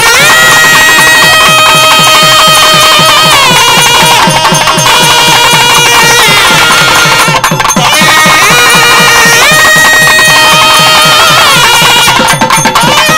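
Traditional South Indian temple music: a nadaswaram plays a loud melody of long held notes sliding between pitches, over fast, steady thavil drumming.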